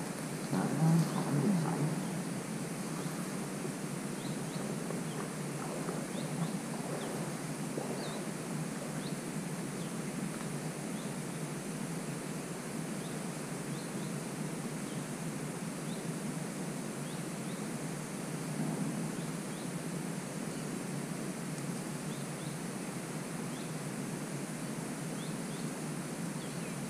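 Steady rural outdoor ambience: an even background hiss with scattered faint, short chirps. Louder rustling or handling noise in the first couple of seconds.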